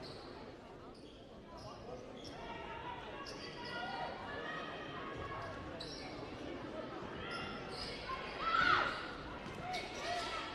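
Basketball game sounds in a gymnasium: a ball bouncing on the hardwood court, sneakers squeaking, and a steady murmur of spectator voices. A louder rising squeal stands out about eight and a half seconds in.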